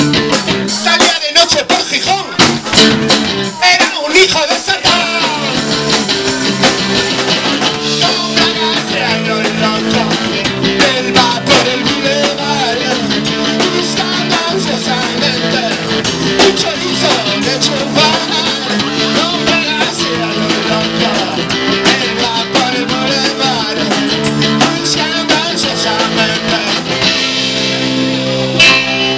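A small rock band playing live: electric bass, electric guitar and drum kit, with a man singing into a microphone. Dense drum hits in the first few seconds give way to sustained guitar chords over a steady beat.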